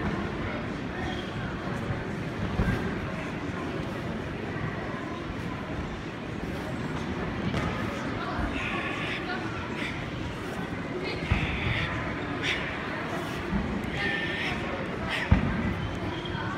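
Echoing crowd chatter fills a large sports hall, with a few sharp thumps scattered through it.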